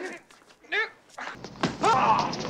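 A short strained cry from someone in a scuffle, then a cut to a street brawl: loud yelling voices over traffic rumble, with a few sharp slap-like hits.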